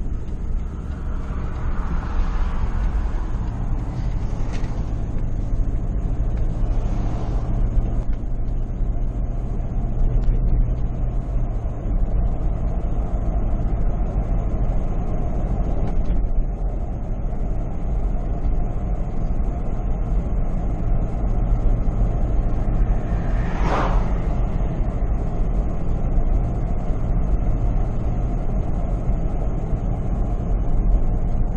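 Steady wind and road rumble on a microphone mounted outside a moving truck's windshield, with the engine's hum under it, strongest in the first dozen seconds. A brief louder whoosh swells and fades a little after two-thirds of the way through.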